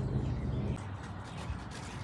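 Quiet background noise with a faint low hum that fades out about a third of the way in.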